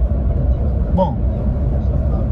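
Steady low rumble of a car's engine and tyres heard from inside the cabin, cruising on a highway at about 90 km/h.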